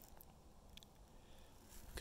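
Near silence, with two faint clicks.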